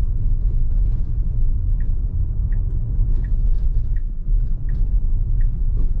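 Steady road and tyre rumble inside a Tesla Model Y cabin while driving. From about two seconds in, a soft turn-signal tick repeats roughly every three-quarters of a second.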